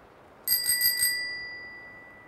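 Handlebar bicycle bell on a child's bike, rung in a quick run of about four strikes about half a second in. The ring then fades out over about a second.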